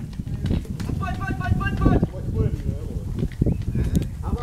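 A raised voice calling out twice over a continuous low rumble and scattered short knocks.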